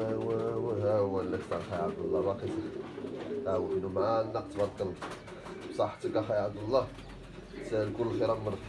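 Domestic pigeons cooing.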